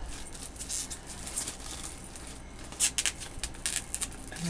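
Plastic shrink-wrap crinkling as it is worked off a journal by hand, in irregular rustles and crackles, loudest about three seconds in.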